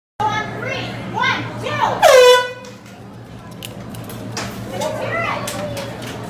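A short air-horn blast about two seconds in, dropping in pitch as it starts and then holding briefly. Voices and crowd chatter can be heard around it.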